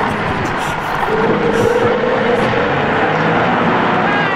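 Motor grader's diesel engine running, a steady heavy engine noise with a flat whining tone through the middle seconds.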